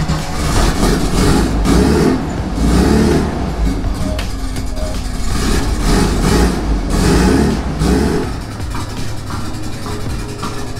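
Turbocharged air-cooled Volkswagen Beetle engine running just after starting, its sound swelling and falling about once a second as it is revved.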